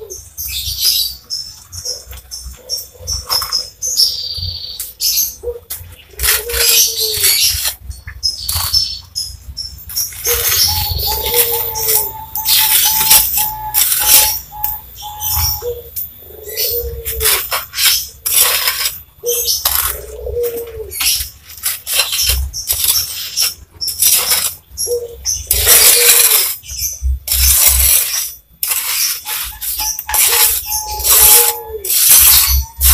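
A bird calls over and over in short notes that rise and fall. Loud, irregular scraping and knocking from tile work runs through it.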